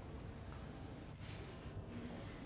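Quiet room tone: a steady low hum with a faint soft rustle a little past the middle.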